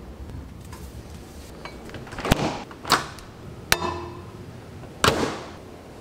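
Kitchen handling sounds over a steady low hum: a refrigerator door opened and items moved about, with four sharp knocks and clunks spaced roughly a second apart.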